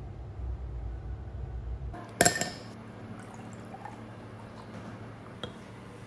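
A sharp glassy clink about two seconds in, then liquid being poured into a glass over ice, with small clicks, as an iced matcha latte is made. A low rumble fills the first two seconds.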